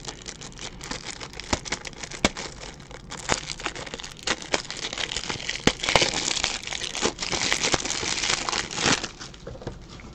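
Crinkling and tearing of plastic packaging as a box of 180-point top loaders for trading cards is opened, with sharp clicks of hard plastic. The crackling grows louder and denser from about halfway in until near the end.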